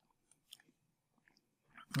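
Near silence with a few faint, short clicks about half a second in and a small sound just before the voice comes back.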